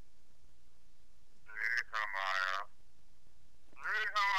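A person's voice in two short murmured bits: one about a second and a half in, lasting about a second, and another starting just before the end. A steady background hiss runs beneath.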